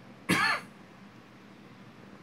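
A single short vocal sound, about a third of a second long and falling in pitch.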